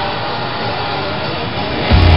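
Steady roar of a rock concert hall picked up by a phone's microphone: crowd noise in a haze with faint sustained tones. Right at the end the band comes in loudly.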